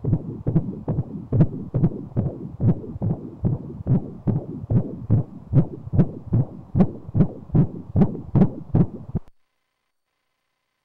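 Fetal heartbeat heard through an ultrasound machine's pulsed-wave Doppler: a fast, even pulse of about 140 beats a minute. It cuts off suddenly about nine seconds in.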